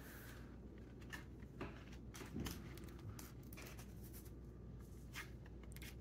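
Faint rustling and scraping of Pokemon trading cards being slid into the plastic pocket sleeves of a KarlyPro zippered card binder, with scattered soft clicks.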